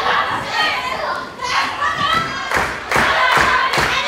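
Several heavy thuds on a wrestling ring's canvas in the second half, among high-pitched shouting voices.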